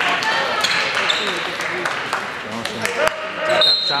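Basketball bouncing on a hardwood gym floor amid crowd chatter and shouts, echoing in a large gymnasium, with a brief high squeak near the end.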